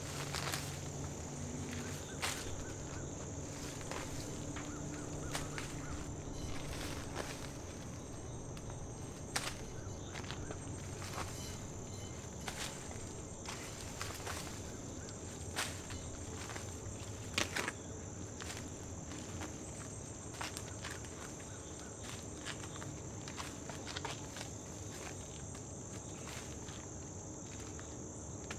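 Steady high-pitched chorus of insects, crickets among them, with scattered clicks and rustles from garden plants being handled and footsteps among them.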